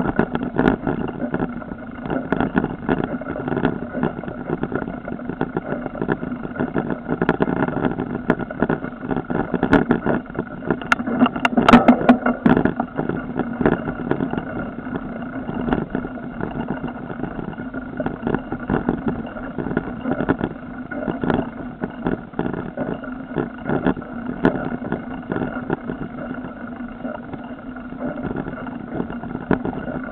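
Rattling and knocking of a camera mounted on a mountain bike as it rides a bumpy forest dirt trail, with tyre noise over the ground. The jolts come thick and fast, loudest in a rough stretch about eleven to twelve seconds in.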